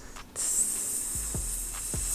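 A man making a long hissing 'psss' with his mouth, imitating air escaping from a car tyre punctured by a nail. It starts about a third of a second in and runs on steadily for nearly two seconds.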